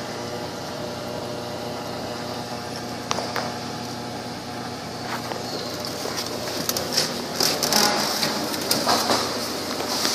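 Chevrolet Trailblazer EXT's 5.3-litre V8 idling steadily, heard from inside the cabin. Near the end, a run of clicks and rustling as the driver's door is opened.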